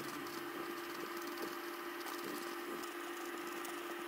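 Quiet room with a steady low electrical hum, and faint soft dabs and scrapes of a paintbrush working black paint onto foam bricks.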